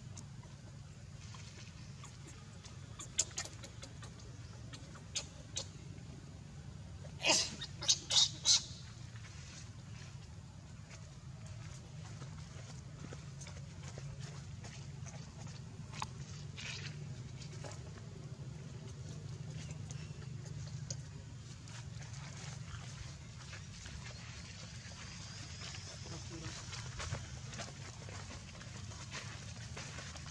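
A baby macaque giving short, high squeaks: a few single ones, then four in quick succession about eight seconds in, over a steady low background hum.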